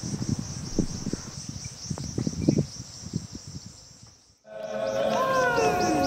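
Insects chirring steadily in a high band, with irregular low rumbles underneath, fading out near the end of the first four seconds. After a moment's silence, music with held chanting voices and sliding calls starts up loudly, over a fast high pulsing beat.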